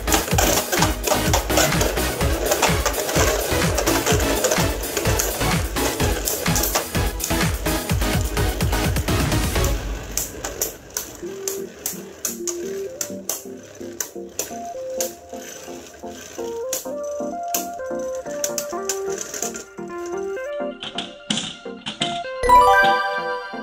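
Background music over the rapid clicking and clattering of Beyblade Burst spinning tops colliding and scraping in a plastic stadium. It is loud and busy for the first ten seconds or so, then quieter, with scattered clicks under a melody that steps up and down.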